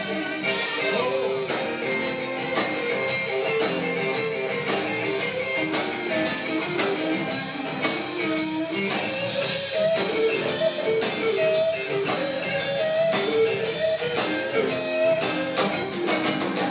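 Live blues band playing an instrumental stretch, led by electric guitar over a steady drum kit beat.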